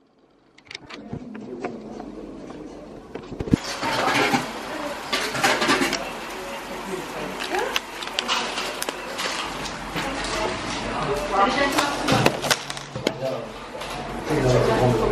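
Indistinct voices talking, mixed with scattered clicks and clatter of handling at a shop counter.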